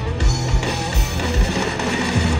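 Punk rock band playing live through a large festival PA: loud, distorted electric guitars, bass and a steadily pounding drum kit, with no singing in this stretch.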